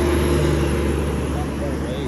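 Volvo FH 480 truck hauling an abnormal load on a lowbed trailer passes close by. Its six-cylinder diesel engine runs with a steady low drone under tyre and road noise.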